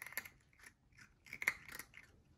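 A British shorthair cat crunching dry kibble from a ceramic bowl: two bursts of crisp crunches, one at the start and a louder one about a second and a half in.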